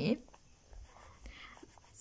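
Faint scratching of a pen tip moving over the paper of a textbook page.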